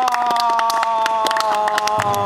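Several people clapping their hands in an irregular patter, over a long held tone that sinks slowly in pitch.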